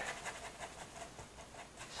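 Faint scratchy brushing of a flat bristle brush dabbing and scrubbing acrylic paint onto a canvas.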